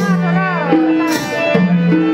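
Instrumental passage of a Nepali folk song played live. A harmonium holds steady notes under a violin's sliding melody, with occasional percussion strokes.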